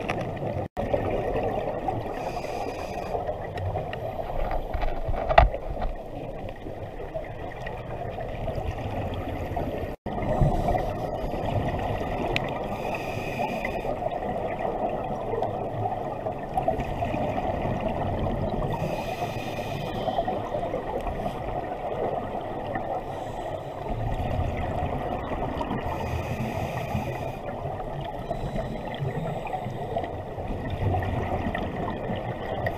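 Scuba diver's regulator breathing heard underwater through a GoPro housing: a muffled steady rush, a hiss of inhaling every six or seven seconds, and rumbling bursts of exhaled bubbles. There is one sharp click about five seconds in.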